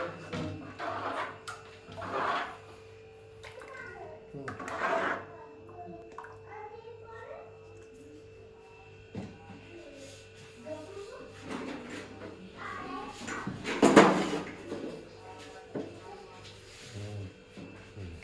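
Indistinct voices, a child's among them, with music in a small room. Near the start, liquid injera batter splashes as a cup is scooped through it in a plastic bucket, and about fourteen seconds in there is a loud sharp knock.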